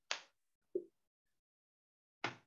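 Two brief sharp sounds about two-thirds of a second apart: a crisp click, then a duller, lower knock.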